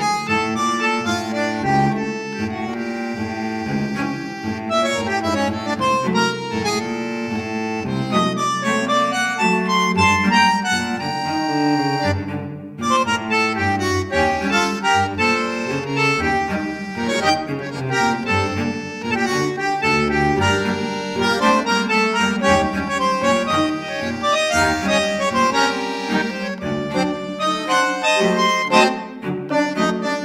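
Instrumental background music, a melody of sustained notes over a steady accompaniment.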